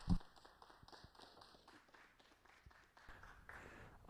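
A quiet room with faint, irregular footsteps and small taps of people walking across a stage, after one soft low thump just after the start.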